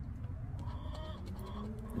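Faint scratching of a poker-chip scratcher across the latex coating of a lottery scratch-off ticket, uncovering number spots.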